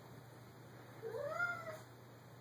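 A domestic cat gives a single meow about a second in, rising and then falling in pitch.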